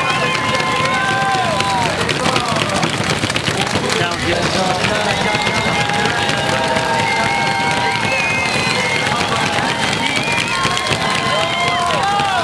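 Roadside crowd cheering and clapping, with long drawn-out shouts that fall away at their ends, overlapping one another.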